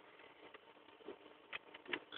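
Near silence: faint room hiss with a few short faint clicks in the second half.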